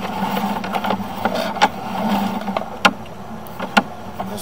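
Sewer inspection camera being pulled back out of the drain line, with a handful of sharp clicks and knocks from the push cable and camera head over a steady mechanical hum.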